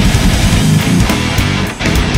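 Progressive death metal played by a full band, with distorted electric guitar foremost. There is a brief drop-out near the end before the music comes back in.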